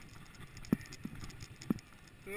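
Bicycle rolling over a dirt forest trail with a low rumble, and two short sharp knocks about a second apart as it goes over bumps.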